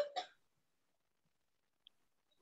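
A brief breathy vocal sound, like a hiccup or a quick breath, right at the start, then near silence with one tiny click near the end.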